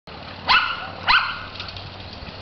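A dog barking twice: two short, high-pitched barks about half a second apart, each rising sharply in pitch.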